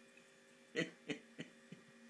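A dog making short vocal 'talking' sounds, one about three-quarters of a second in and two fainter ones after it, over a steady low electrical hum.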